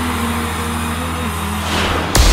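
Live band holding a sustained low chord, with a rising swell of noise building near the end.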